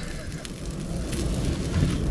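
Small open wood fire crackling softly, a few faint pops over a steady hiss.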